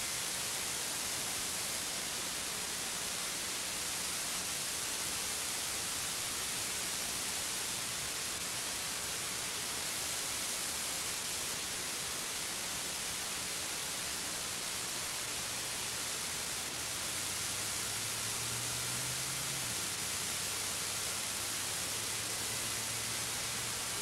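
Steady, even hiss with a faint low hum underneath; no clear engine sound stands out.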